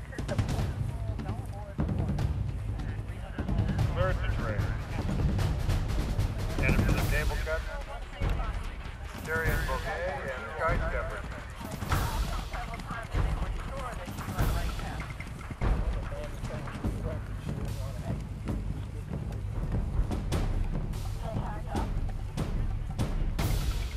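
Open-air rumble, like wind on the microphone, with indistinct voices and music in the background and occasional sharp thumps.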